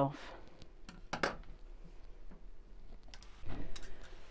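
Scissors snipping off the thread ends: a single short sharp snip about a second in, followed by a few light knocks on a wooden tabletop near the end.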